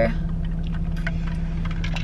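Steady low hum of a car, heard from inside its cabin while it sits stationary.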